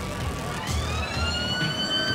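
A long high-pitched whine from a passing Red Force roller coaster train, rising in pitch for about a second and a half and then starting to fall away.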